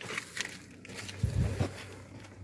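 Plastic glovebox of a Mitsubishi Xpander being handled as it hangs pulled down, with a few light plastic clicks and a dull thump about a second and a quarter in.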